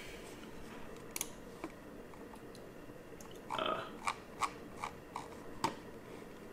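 Short, sharp clicks of computer input, about seven in all: two in the first half and a quicker run of about five in the second half.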